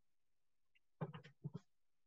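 Near silence, then about a second in a brief vocal sound of two or three quick pulses lasting about half a second.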